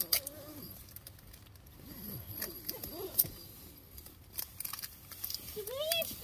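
Quiet murmured voice sounds with scattered light clicks and taps close to the microphone, as in an improvised ASMR attempt.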